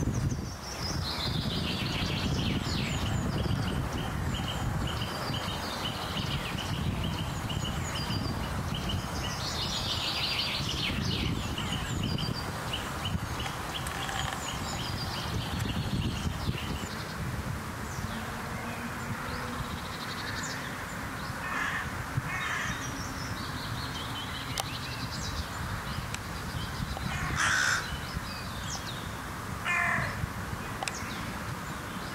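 Crows cawing, with harsh calls in the second half and the loudest one a couple of seconds before the end, over higher-pitched trilling songbird song in the first half and a steady low background rumble.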